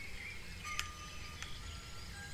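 Faint, high chime-like tinkling tones with two light clicks, just under a second in and about a second and a half in: a soft sound effect under a slide transition.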